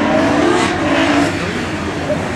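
Rally car engine running hard under acceleration, its note climbing gently and then dropping back about a second and a half in.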